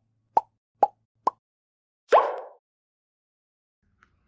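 Cartoon pop sound effects for a logo animation: three short plops about half a second apart, each a little higher in pitch, then a longer sliding effect about two seconds in.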